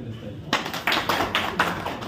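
A few people clapping, with scattered, uneven claps several times a second, starting about half a second in.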